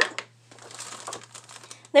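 A shiny red gift bag crinkling and rustling as a hand rummages in it, a run of fine crackles lasting about a second and a half.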